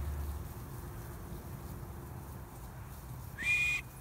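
A sheepdog handler's short whistle command near the end, rising then held at a high pitch for about half a second, over faint outdoor background.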